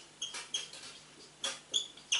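Whiteboard marker squeaking on the board as words are written: a run of short, high squeaks, one per pen stroke, irregularly spaced.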